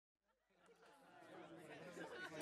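Near silence at first, then faint chattering voices fading in and slowly growing louder.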